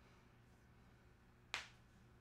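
Near silence with a steady low hum, broken once, about one and a half seconds in, by a single sharp click that dies away quickly.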